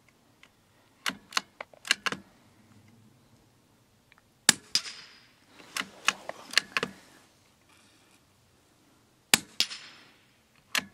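Two rifle shots from a .22 rimfire rifle, about five seconds apart, each followed a quarter second later by a fainter sharp crack. Clusters of quicker, quieter clicks and knocks come before each shot.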